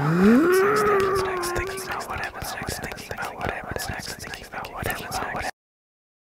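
A man's drawn-out groan of frustration, rising sharply in pitch and then held for about a second and a half. It is followed by a few seconds of fainter, broken grumbling with small clicks, which stops abruptly.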